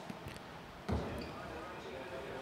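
A bocce ball, just bowled underarm, lands on the court with a dull thud about a second in, then rolls on as the sound fades.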